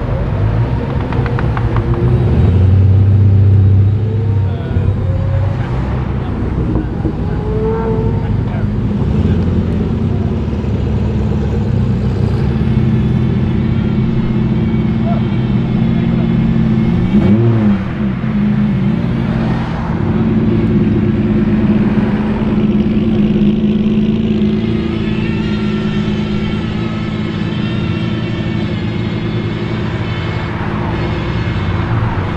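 Supercar engines as the cars drive off slowly one after another. A Koenigsegg Agera's twin-turbo V8 grows louder a couple of seconds in as it pulls away. Around the middle a Ferrari F50's V12 gives a brief rev, rising and falling in pitch, and later an engine runs with a steady tone.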